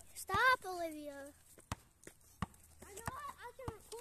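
A basketball bounced on asphalt: four sharp knocks, roughly two-thirds of a second apart, in the second half. A child's call comes early on, and faint children's voices run under the knocks.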